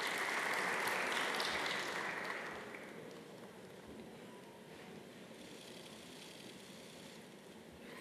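Audience applauding in a large hall. The clapping dies away about three seconds in, leaving only faint hall noise.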